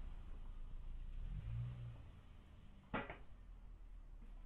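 A car's engine fading as the car moves away, with a brief low hum partway through. A single sharp click comes about three seconds in.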